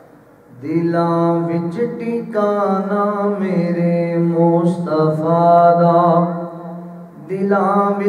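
A man's unaccompanied devotional chanting into a microphone, in long, drawn-out melodic notes. It begins about a second in, eases off briefly near the end, then picks up again.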